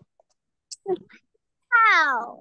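A cat meowing once near the end: one long, loud call falling in pitch.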